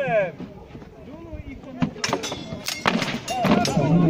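Hand-to-hand fighting with swords and shields in a medieval re-enactment: from about halfway through, a quick run of sharp knocks of weapons hitting shields and armour, some with a ringing metallic clink, over the voices of onlookers.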